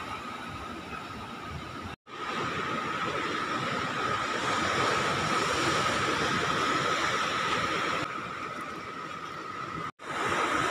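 Sea surf and wind on the microphone, a steady rushing noise with a faint steady high tone in it, cutting out for an instant about two seconds in.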